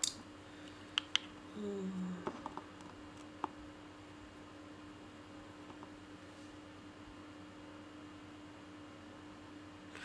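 Quiet room tone with a steady low hum, broken in the first few seconds by a few faint sharp clicks and a brief low hum-like sound about two seconds in.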